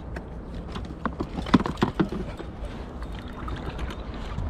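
Float tube and fishing tackle on the water during a fight with a fish: a run of irregular knocks and clicks about a second in, over a steady low rumble.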